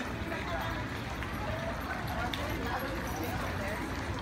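Indistinct voices of people talking nearby over steady outdoor background noise, with small fountain jets splashing into a pond.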